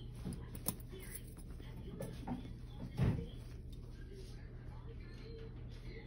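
Steady low room hum with faint murmured voices, a sharp click under a second in and a louder low bump about three seconds in.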